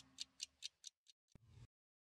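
Ticking sound effect from a TV programme's closing jingle: faint, evenly spaced clock-like ticks, about four to five a second, fading away and stopping a little over halfway through.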